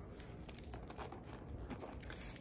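Car key and house key on a keychain jingling faintly as they are handled, a scatter of small light clicks.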